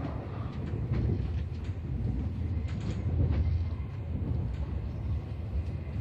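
Passenger train running on the track, heard from inside the carriage: a steady low rumble of wheels on rails with scattered clicks and rattles.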